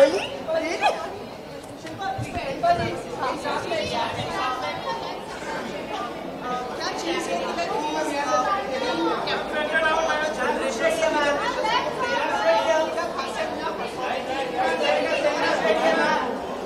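Overlapping chatter of several voices, with no single clear speaker, in a large room.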